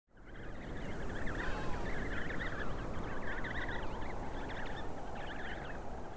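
Wind blowing over a colony of penguins, many calling at once, fading in at the start.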